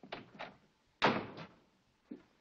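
A door slammed shut about a second in, a sharp bang that rings out briefly, after two lighter thuds.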